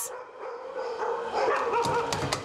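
Shelter dogs barking and whining.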